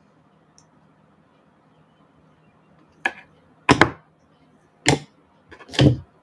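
Room tone, then about three seconds in, four short knocks roughly a second apart: a green plastic knife cutting through a ball of dough against a granite countertop, and the knife being set down.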